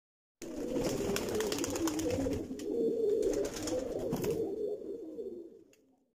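Several pigeons cooing over one another in a continuous chorus, starting about half a second in and fading out near the end.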